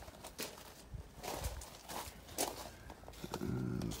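Footsteps, irregular short steps and knocks, as the camera operator moves along the side of the motorhome; a short voiced hum comes in near the end.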